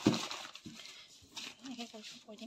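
A plastic jar knocked down onto a newspaper-covered table: a dull thump, then a lighter knock, with newspaper rustling. A brief voice sounds near the end.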